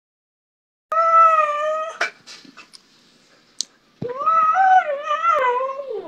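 Siberian husky vocalizing: a steady whining call of about a second, then after a pause a longer wavering howl-like 'talk' that rises and falls in pitch. The dog is begging for more food, as the owner takes it.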